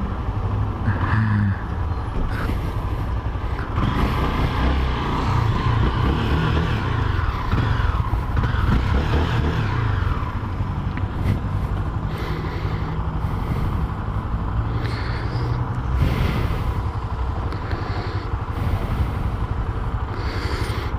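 Motorcycle engine running at low speed in city traffic, heard from the rider's seat, with a steady low rumble.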